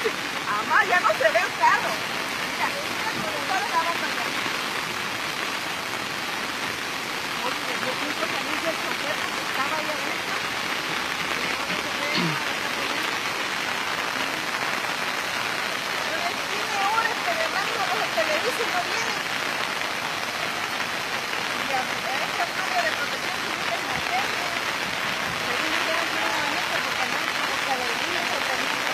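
Steady hiss of rain and running water. Faint, indistinct voices come and go underneath.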